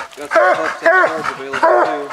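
Coonhound barking treed at a raccoon up the tree: a run of short, loud barks, about two a second.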